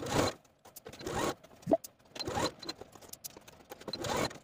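Electric sewing machine stitching a sleeve band in the ditch of its seam, running in several short stop-start bursts.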